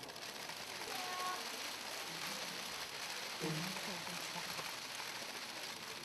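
A dense, overlapping clatter of many press cameras' shutters firing at a photo call, with faint voices murmuring briefly about a second in and again midway.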